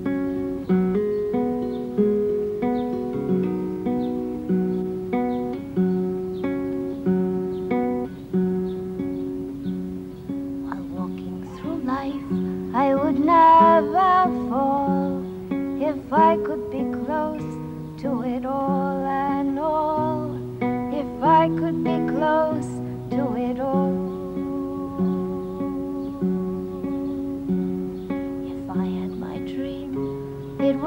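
Acoustic guitar fingerpicked in a steady repeating pattern, with alternating bass notes about twice a second. A woman's voice sings over it twice near the middle.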